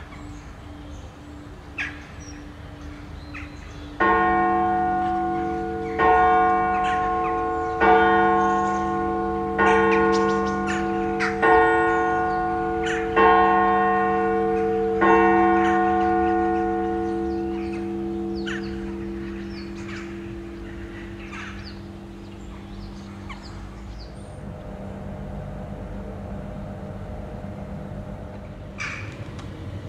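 A single church tower bell striking seven times, about two seconds apart, each stroke ringing on, with the hum dying away slowly after the last. Faint bird chirps sound throughout, and a low rumble comes in near the end.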